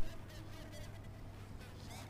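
Faint steady hum and hiss of an open phone-in line on which the caller does not answer, with a brief low thump right at the start.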